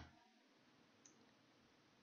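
Near silence: room tone, with one faint computer-mouse click about a second in.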